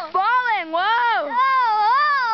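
A young person's high-pitched wailing voice: about three long, drawn-out cries in a row, each swooping up and down in pitch.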